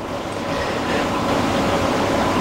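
A steady hiss of background noise with a faint hum, growing a little louder in the first second.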